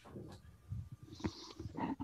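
Faint, irregular throat and breath noises from a person over a video-call microphone, with a short hiss a little past the middle.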